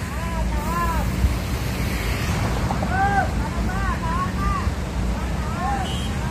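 Scania coach's diesel engine running low and steady as the bus moves slowly in to the kerb. Short, high rising-and-falling calls sound over it, a few near the start and a quick run of them about three to four and a half seconds in.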